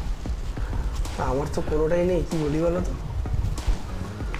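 A man's voice making a drawn-out, wavering hum or 'hmm' for about a second and a half near the middle, over a low steady room rumble.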